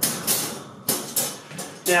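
Wire door of a folding metal dog crate being unlatched and swung open: a burst of wire rattling and jingling, then a few sharp metal clicks.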